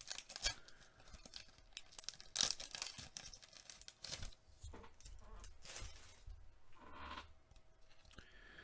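Paper rustling and tearing as a pack of Upper Deck hockey cards is opened and the cards are pulled out and shuffled: a scatter of soft, short crinkles and scrapes.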